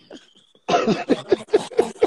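A person laughing in a quick run of short, breathy bursts, about five or six a second, starting a little over half a second in.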